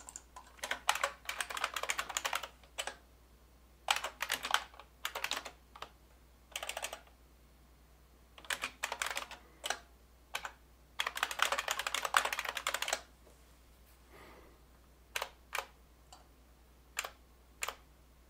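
Typing on a computer keyboard: bursts of rapid keystrokes with pauses between them, then a few single key presses near the end.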